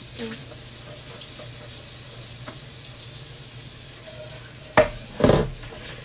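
A steady watery hiss, typical of a pot of crab broth simmering on the stove, over a low hum. A sharp knock and a short low sound come near the end.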